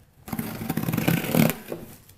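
A package being torn open by hand: a continuous ripping and scraping of packaging that starts a moment in and stops shortly before the end.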